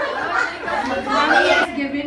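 Several people talking at once: party chatter in a large room. Near the end, one voice holds a steady note.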